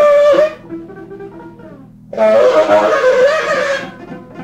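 Free-jazz saxophone and double bass duo. A loud saxophone note opens, softer stepwise notes follow, and from about two seconds in the saxophone plays a loud, rough, wavering phrase.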